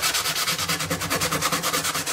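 Hand sanding a Gibson SJ-200's lacquered spruce top with 320-grit wet-or-dry sandpaper: quick, even back-and-forth rubbing strokes that knock down the roughness of the blistered, patched finish.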